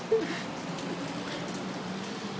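Steady background hiss with a short vocal sound just after the start.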